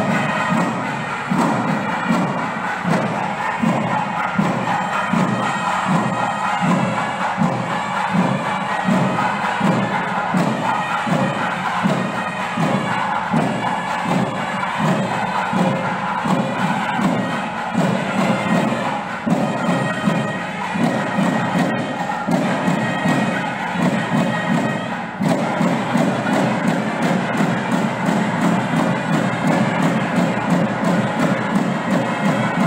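Processional music with a steady drum beat, about two beats a second, under a sustained, reedy wind melody.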